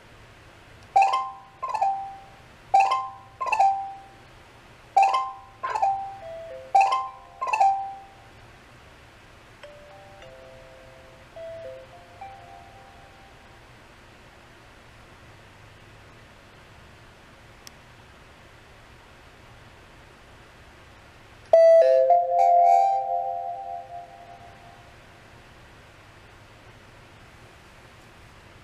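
Ring Chime Pro plug-in chime playing its Xylophone alert tone through its speaker: four quick groups of bright, mallet-like notes, followed by a few fainter notes. About 21 seconds in, a second, different chime tone starts with a sharp click and rings out, fading over about three seconds.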